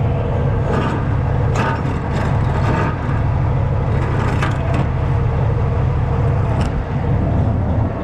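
Truck diesel engine idling steadily, with a few short scrapes and knocks as a wooden push broom is pulled out from under a rubber strap and its handle bumps against the steel deck.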